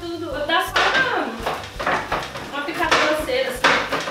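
Knife chopping walnuts on a wooden cutting board: a quick, irregular series of knocks.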